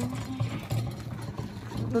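Two-wheeled metal hand cart carrying a plastic water barrel rattling as it is pulled over a gravel road, with crunching footsteps on the gravel.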